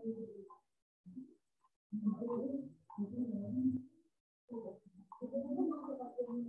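A pigeon cooing: a series of low, repeated coos, each lasting under a second, with short pauses between them.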